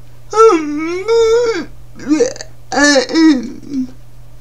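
A woman with athetoid cerebral palsy vocalizing in drawn-out, open-mouthed voice sounds that glide in pitch: her attempt at speech, made hard to understand by the condition. There are several sounds, the first over a second long.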